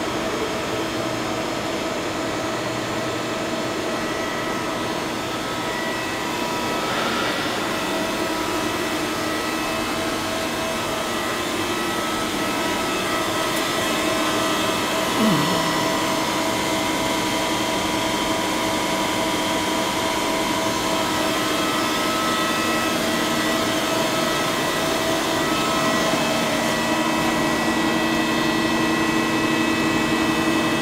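Steady hum and whir of running machinery in a factory hall, with several steady tones held throughout and a short falling tone about halfway through.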